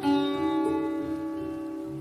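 Solo acoustic guitar: a chord struck hard right at the start, then left ringing and slowly fading.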